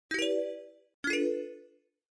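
Two electronic chime notes about a second apart, each struck sharply and fading away within about half a second: an intro logo sound effect.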